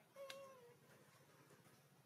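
An infant macaque giving one short, high, meow-like coo that falls gently in pitch and lasts about half a second, with a faint click at its start.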